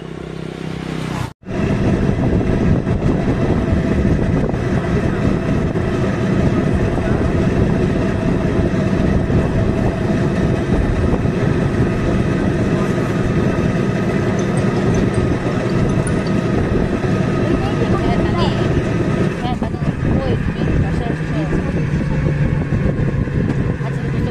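Steady running noise of a moving road vehicle, engine hum mixed with road and wind noise, heard from on board. It cuts out sharply for a moment about a second and a half in, then carries on loud and even.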